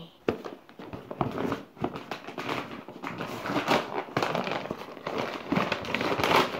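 Christmas wrapping paper crackling and rustling in irregular crackles as a wrapped present is handled.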